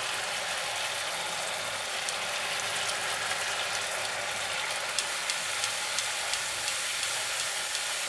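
Spice paste and turmeric sizzling steadily in hot mustard oil in a kadai, with scattered faint crackles.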